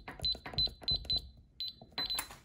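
Electronic keypad on a Winchester gun safe beeping as the combination is punched in: about six short, high beeps, each with the click of a key press, one for each button.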